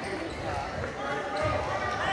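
Basketball bouncing on a hardwood gym floor during play, over crowd chatter in a large, echoing gymnasium.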